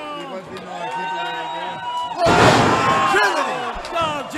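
Wrestlers slamming onto the ring canvas about halfway in: a sudden loud crash that dies out in under a second, amid shouting voices. Before it, a man's voice holds a long drawn-out shout.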